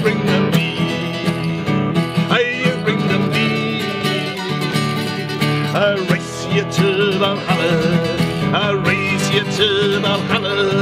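Acoustic guitar strummed under singing voices: a live folk song, with long wavering sung notes about six seconds in and again near the end.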